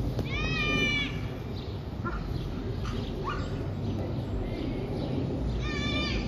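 A dog's high-pitched yelping bark: one drawn-out cry about half a second in and another starting near the end, with two short fainter yips between, over a steady low rumble.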